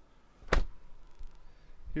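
A 2014 Buick Enclave's door shutting once, a single sharp thud about half a second in.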